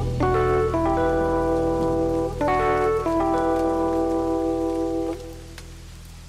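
Rhodes electric piano (sampled 1976 Mark I Stage Piano) playing sustained chords over a steady wash of rain sound effect. The chords fade out about five seconds in, leaving the rain.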